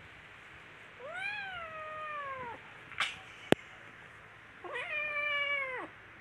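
Kitten meowing: two long, drawn-out meows, each rising briefly and then sliding down in pitch. A sharp click falls between them and is the loudest moment.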